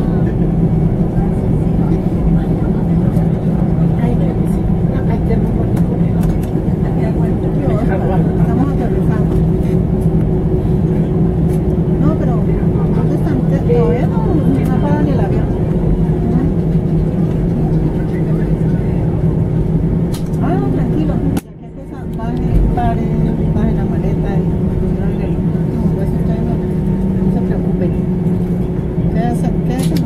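Steady drone inside the cabin of an Airbus A320 taxiing after landing, with passengers' voices murmuring under it. About two-thirds of the way through the drone cuts out abruptly for a moment and swells back up.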